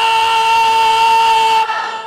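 A man's voice holding one long, high sung note into a microphone, steady in pitch, breaking off shortly before the end.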